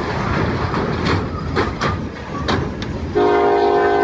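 A freight train ploughing into a semi-trailer at a level crossing: a loud rumble with several sharp bangs and crunches as the trailer is struck and crumpled. About three seconds in, the locomotive's multi-note air horn starts blowing, steady and loud.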